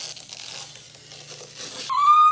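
Protective plastic film being peeled off a flat-screen TV's screen: a continuous soft, hissy rustle. Just before the end a man's voice breaks into a high held note.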